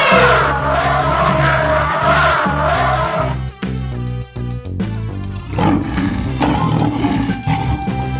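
An elephant trumpeting, a harsh blaring call that stops about three seconds in, over background music with a steady beat that carries on after it.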